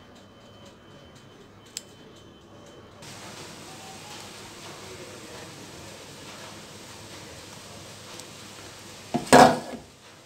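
Quiet handling of a stainless steel mixing bowl as dough is scraped out by hand, then a loud metallic clatter of the bowl against the countertop as it is moved, shortly before the end.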